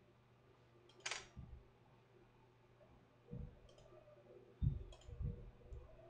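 Faint clicking and soft low thumps of a hand working a computer mouse and desk while a camera's aperture is set in camera-control software: one short sharper click about a second in, then scattered soft thumps with a cluster near the end.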